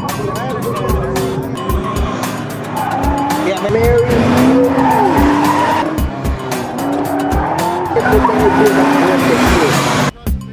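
Car tyres squealing in long, wavering howls as a car is driven hard through an autocross cone course, with a steady beat of background music underneath.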